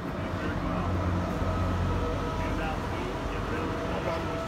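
A low engine hum swells for about two seconds and fades, under faint background voices.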